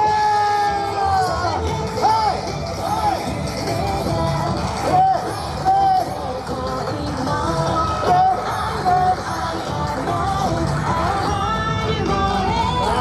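Loud yosakoi dance music with sung vocals, played continuously for a team's choreographed performance.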